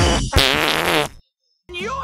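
Electronic dance music cuts off and a fart sound plays for under a second, loud, with a wavering pitch. After a brief silence, a person's voice starts near the end.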